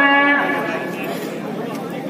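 A held sung or chanted note with many overtones. It fades about half a second in, leaving a noisy background of the procession.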